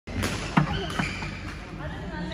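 Three sharp knocks on a badminton court, about a quarter, a half and one second in, the middle one loudest.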